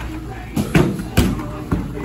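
Boxing gloves striking a held kick pad: a run of sharp smacks about half a second apart, over background music.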